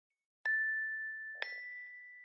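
Two bright chime notes, the first about half a second in and the second about a second later and a little higher, each ringing on and slowly fading: a logo sting.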